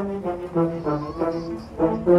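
A concert wind band of brass, clarinets and saxophones playing a tune, the brass leading with a line of short notes, several a second.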